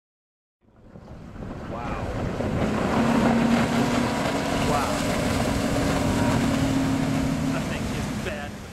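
A Wooldridge 32-foot Super Sport Offshore Pilothouse motorboat running at speed: a steady engine drone under loud rushing water and wind on the microphone. It fades in over the first couple of seconds.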